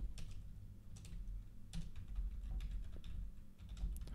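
Typing on a computer keyboard: a run of faint, irregularly spaced keystrokes.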